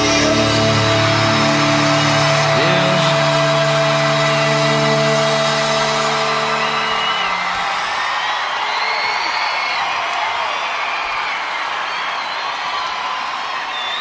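A live rock band's closing chord held and sustained, cutting off about halfway through, while a concert crowd cheers and whoops, the cheering carrying on after the band stops.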